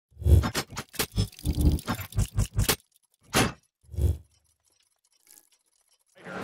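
Sound effect for an animated logo intro: a quick run of sharp mechanical clicks and clacks, about a dozen in under three seconds. Then two heavier clacks follow about half a second apart.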